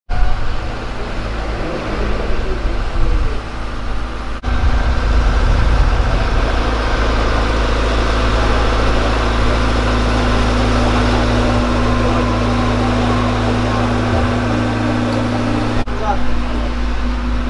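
Steady drone of an engine running, with a strong low rumble, broken by a brief dip about four and a half seconds in.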